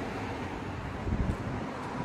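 Steady background noise of a semi-open car park, with wind on the microphone and a few soft low thumps a little over a second in.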